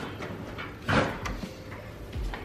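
Keycard held to an electronic hotel door lock: one short noisy burst about a second in, then a few faint clicks, as the lock is unlocked.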